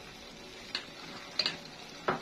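A spoon spreading raisins over rice in a coated cooking pot, giving two light clicks, the first about three-quarters of a second in and a louder one near a second and a half, over a faint steady background.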